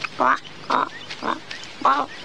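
A cartoon duck character sniffing four times in quick succession, short nasal sniffs about half a second apart, as he smells a flower.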